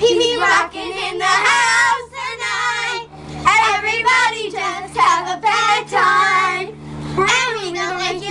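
Children singing together in loud phrases with short breaks between them.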